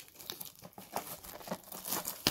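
Clear plastic shrink wrap crinkling and tearing as it is peeled off a cardboard trading-card box, in a rapid run of irregular crackles.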